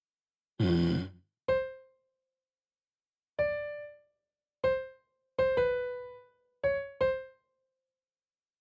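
Single notes of a sampled acoustic grand piano sounding one at a time, about seven of them at uneven intervals, each struck and left to die away: notes auditioned as they are clicked into a piano roll. A short, rougher burst of sound comes first, under a second in.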